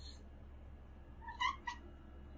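A domestic cat giving two short, high squeaks in quick succession, about a quarter second apart, near the end: the squeak these cats make on spotting a bug.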